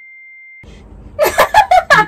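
A censor bleep: one steady high-pitched tone, under a second long, in place of the audio. Then, just over a second in, two people break into loud laughter.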